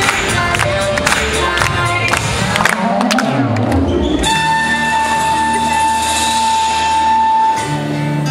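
Hip-hop dance music played over the stage speakers: a beat with sharp percussive hits, then about three seconds in a rising sweep, and from about four seconds a long held high note over sustained chords.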